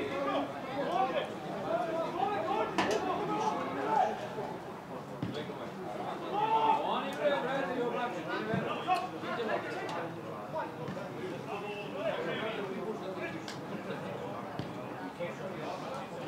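Football players' voices on the pitch: shouts and calls to each other, overlapping and heard from afar, with a few sharp knocks of the ball being kicked.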